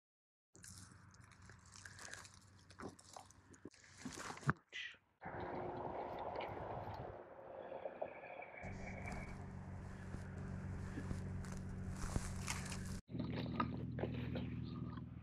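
Hands rustling and crunching through dry pine needles and brush to pick porcini mushrooms, with sharp cracks and snaps and one louder click about a third of the way in. A low steady hum runs underneath from about halfway through.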